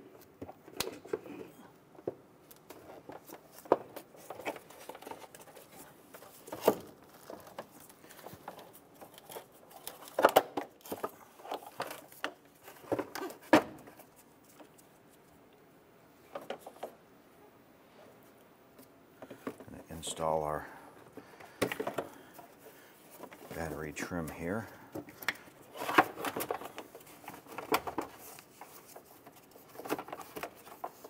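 Intermittent clunks, clicks and scrapes of a car battery being set down in its tray and its cable and hold-down hardware being handled in the engine bay, with a couple of longer rubbing sounds about two-thirds of the way through.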